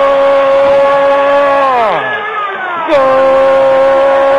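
A radio football commentator's long drawn-out goal cry, "Gooool", sung out on one loud, steady, held note. Just before two seconds in the pitch sags and the cry breaks off for a breath. About three seconds in it resumes on the same note.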